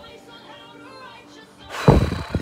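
A song plays faintly in the background. Near the end comes a loud thump and about a second of rustling and knocking as the phone doing the recording is handled and set down.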